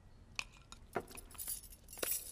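A few faint, separate clinks of tableware, dishes and cutlery touching at a dinner table, the clearest about half a second in and about a second in.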